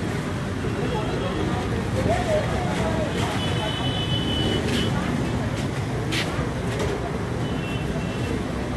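Market street ambience: a steady rumble of traffic with indistinct voices. A brief high tone sounds about three seconds in, and two sharp clicks come near five and six seconds.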